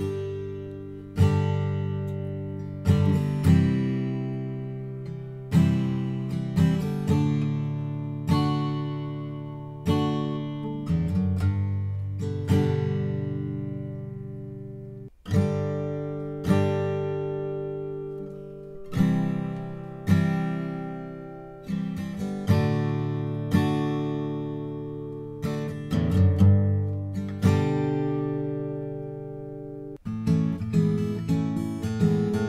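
Acoustic guitar strumming chords, each left to ring out and fade, one to two seconds apart. First comes a Gibson Custom Historic 1936 Advanced Jumbo with a thermally aged top and rosewood back and sides. After a sudden break about halfway through, a similar passage follows on a 2015 flame maple Advanced Jumbo.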